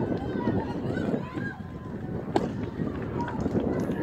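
Outdoor ballfield ambience with distant voices and wind on the microphone. About two and a half seconds in comes one sharp smack: a pitched baseball landing in the catcher's mitt.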